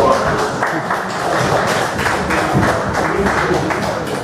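Audience applauding, a dense patter of many hands clapping.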